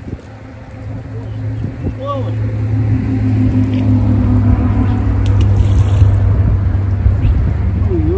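An engine running steadily, a low drone that grows louder over the first four seconds or so and then holds.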